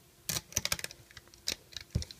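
An irregular run of small sharp clicks and snaps: a hook and rubber loom bands knocking against the plastic pegs of a Rainbow Loom as the bands are worked off it, with the loom handled.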